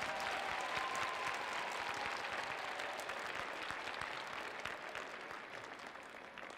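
Audience applauding, the clapping slowly dying down.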